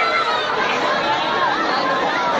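Dense crowd of many people talking at once, their voices overlapping in a steady, unbroken babble.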